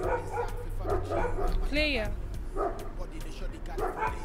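A dog barking in short yaps, with one yelping whine just before two seconds in.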